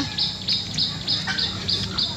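A bird calling in an even series of short, high chirps, about four a second, each dipping slightly in pitch.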